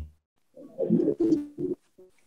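A bird cooing in a few short, low notes starting about half a second in.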